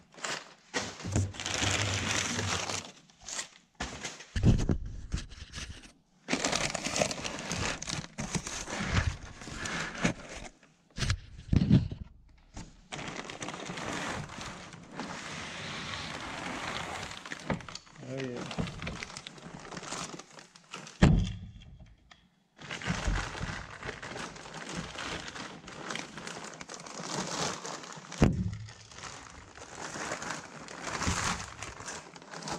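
Crumpled kraft packing paper, cardboard box flaps and plastic wrap rustling and crinkling in irregular handfuls as a box is unpacked by hand, with a few dull thumps, the loudest about two-thirds of the way through.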